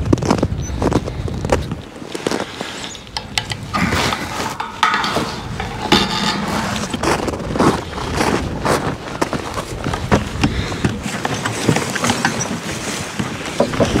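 Horse-drawn sled moving over icy, crusted snow behind a team of draft horses: the runners scrape and grind, and trace chains and harness rattle and knock throughout.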